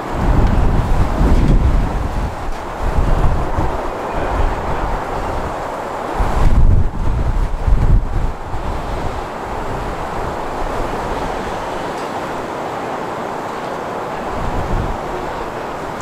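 Wind buffeting the camera microphone in gusts, loudest in the first two seconds and again around six to eight seconds in, over a steady outdoor rushing noise.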